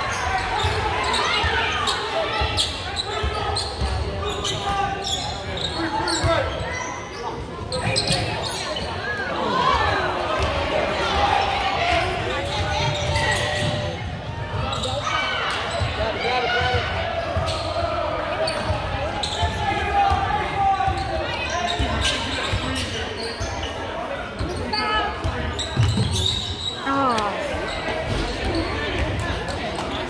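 A basketball dribbled on a hardwood gym floor, thudding repeatedly under the chatter and shouts of the crowd and players, echoing in the gymnasium.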